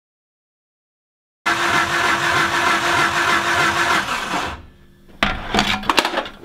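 Mitsubishi Evo 4G63 engine cranking over on the starter without firing, its injectors switched off so the ignition timing can be set with a timing light. The cranking starts suddenly about a second and a half in, runs for about three seconds and winds down, followed by a few clicks and knocks.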